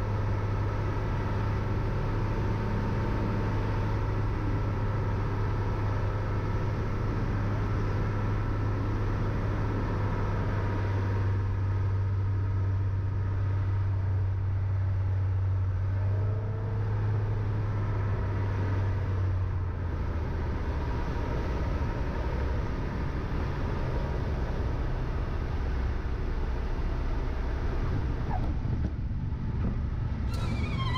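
Steady drone of a Piper PA-32's six-cylinder piston engine and propeller, with airflow noise, heard in the cabin on final approach to land. The low drone eases about two-thirds of the way in.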